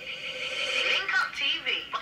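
Sound of the played video's intro: a voice over a steady high tone.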